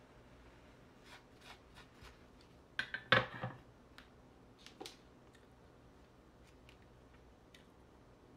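Small clicks and light knocks of tools and small parts being handled on a paper-towel-covered work surface, with a brief cluster of louder knocks about three seconds in.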